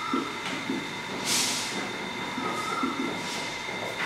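Marker pen writing on a whiteboard: a run of short scratching strokes, with a brief squeak near the start and again past the middle.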